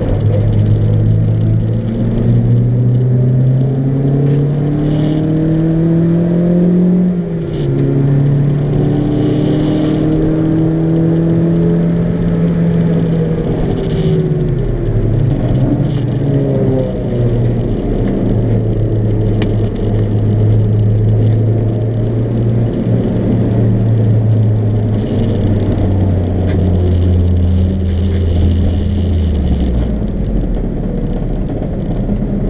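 Track car's engine heard from inside the stripped cabin while it is driven hard, its pitch climbing under acceleration and dropping sharply at gear changes. Through the second half it holds a steadier note, then winds down near the end as the car slows.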